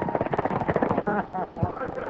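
Voices shouting over a rapid clatter of sharp cracks or knocks, many a second, thickest in the first second, on an old film soundtrack.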